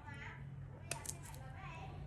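Faint background chatter of voices over a low steady hum, with a sharp click and a few lighter clicks about a second in.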